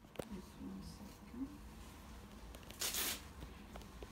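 Handling of a fabric shoulder sling as it is fitted: a click just after the start, then one short scratchy rustle of the strap about three seconds in.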